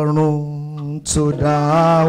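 A man's voice singing worship, holding a long steady note, breaking briefly about a second in, then holding another.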